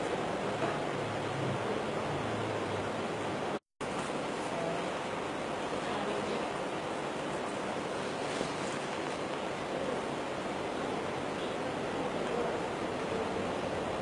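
Steady, even rushing background noise with no distinct events, cut to silence for a split second about three and a half seconds in.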